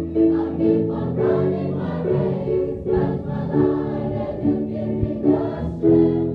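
A large choir singing together, with short held notes that change in a steady rhythm.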